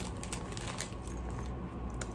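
Faint scattered clicks and light rustling of small plastic-bagged knitting notions and needle-set parts being handled.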